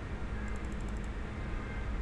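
Steady background room noise with a low electrical hum, and no speech. A quick run of faint ticks comes about half a second in.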